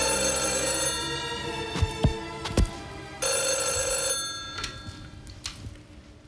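Telephone bell ringing in two rings of about a second each, about three seconds apart, with a few sharp knocks between them. After the second ring it stops and the sound drops away as the call is answered.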